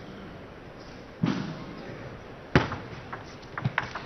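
Table tennis rally: a sharp click of the celluloid ball off a bat or the table about two and a half seconds in, followed by several lighter ticks, over low steady background noise. A brief rush of noise comes just over a second in.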